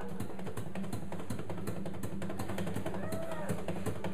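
Steel-string acoustic guitar strummed fast in a steady, driving rhythm. About three seconds in, a harmonica played from a neck rack comes in with a short note that bends up and back down.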